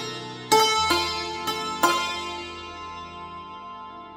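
Santur (hammered dulcimer) struck with wooden mallets, playing a slow melody. Four notes are struck in the first two seconds and left to ring, fading away through the rest.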